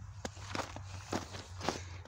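Footsteps in snow: about half a dozen irregular steps of a person walking.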